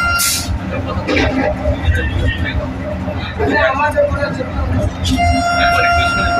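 Steady low rumble of a Vande Bharat Express electric train running along the track, heard inside the driver's cab, with low voices. A short hiss comes near the start. About five seconds in, a steady pitched tone with overtones begins and holds.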